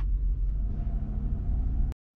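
Steady low rumble of the Lexus GX470's 4.7-litre V8 idling, heard from inside the cabin. It cuts off abruptly just before the end.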